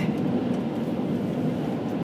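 Steady low rumble of a running car, heard from inside the cabin.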